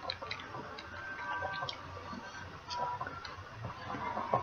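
Faint, irregular small clicks and mouth noises of a person chewing a candy chew.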